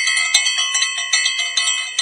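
Rapid, bright bell chimes struck about five times a second, several ringing tones at once, as in a chiming outro jingle.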